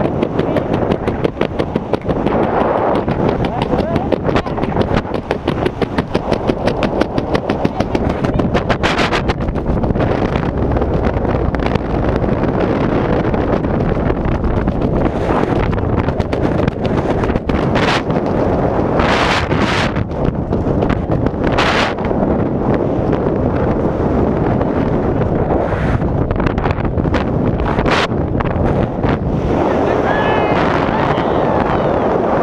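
Wind rushing over the camera's microphone during a tandem parachute descent under an open canopy. It is loud and steady, with a rapid flutter and a few sharper gusts.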